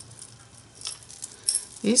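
Strands of beads clicking and rattling lightly against each other as hands pull them from a jar, a few faint clicks.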